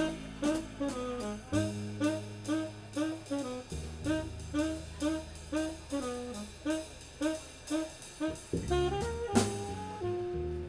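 Saxophone, upright bass and drum kit playing live jazz. The saxophone repeats a short figure of bent notes about twice a second over held low bass notes, and there is a louder accent near the end.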